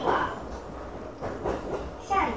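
Electric commuter train running along the rails, heard from inside the passenger car: wheel-on-rail and running noise that rises and falls.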